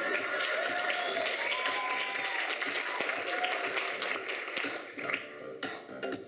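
Live theatre audience applauding, dense clapping with a few voices calling out over it; the applause thins and dies away near the end.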